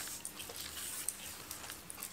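Faint rustling and a few light clicks as hands work aspidistra leaf strips in between a dried seed pod and floral foam.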